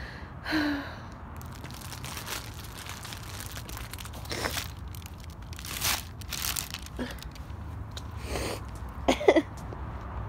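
Short breaths and sniffs close to the microphone, several spread over the seconds, the loudest about nine seconds in with a brief voiced catch, over a low steady background rumble.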